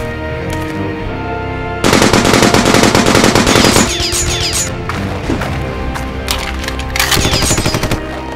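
Bursts of automatic gunfire: a long rapid burst from about two to four seconds in, a few scattered shots, and another rapid burst near the end, played over an orchestral film score.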